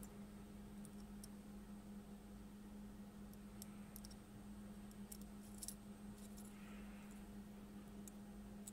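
Near silence with a steady low hum, broken by a few faint small clicks and taps in the middle, as a circuit board and its components are handled.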